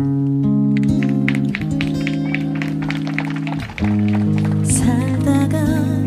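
A recorded Korean pop ballad in an instrumental passage between sung lines: acoustic guitar plucked over held low chords, with a wavering melody line coming in about five seconds in.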